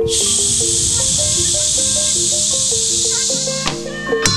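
Gamelan ensemble playing a stepped melody of sustained metallophone notes, under a loud, steady high hiss that starts abruptly and cuts off shortly before the end.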